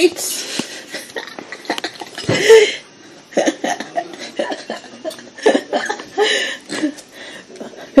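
A person eating a hot dog in a crusty bread roll: bites and chewing with short voiced sounds and chuckles in between.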